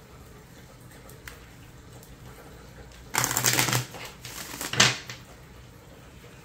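A tarot deck being shuffled by hand: quiet at first, then a burst of shuffling about three seconds in and a shorter one with a sharp slap of cards just before five seconds.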